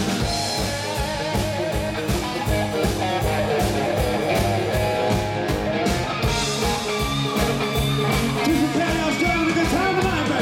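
Live rock band playing with electric guitars, acoustic guitar, bass and a drum kit keeping a steady beat.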